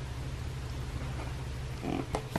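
Steady low hum with faint handling of paper and card packaging, which grows into a rustle near the end.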